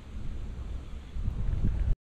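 Wind buffeting an outdoor camera microphone as a low, uneven rumble that grows stronger in the second half, then cuts off suddenly just before the end.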